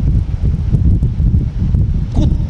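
Loud low rumble of air from an electric pedestal fan buffeting the microphone.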